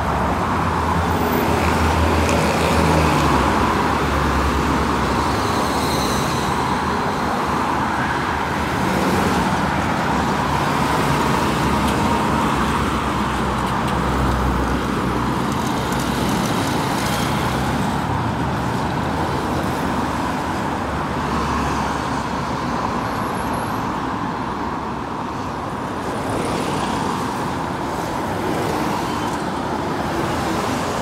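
Steady road traffic: cars and minibuses passing on a busy multi-lane road, with a continuous low engine rumble and the hiss of tyres rising and falling as vehicles go by.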